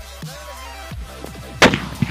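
A sutli bomb (a twine-wrapped Indian firecracker) going off with one sharp, loud bang about one and a half seconds in, over electronic dubstep background music.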